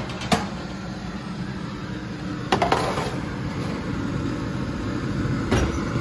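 Stainless steel baking tray being slid out on the oven rack: a sharp click just after the start, a clattering scrape of metal on the rack about two and a half seconds in, and another knock near the end, over a steady low hum.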